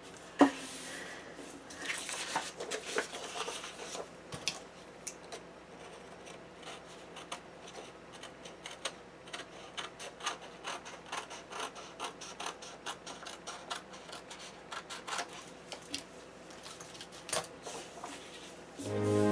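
Paper planner pages being handled and turned, rustling, with many small clicks and taps. A sharp tap about half a second in is the loudest sound.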